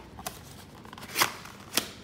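Cardboard box being opened by hand: the lid flap worked loose with a few light ticks, then two short sharp cardboard scrapes, about a second in and again near the end.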